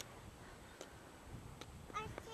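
A few faint sharp clicks, a little under a second apart, of trekking-pole tips striking an asphalt path as a walker climbs.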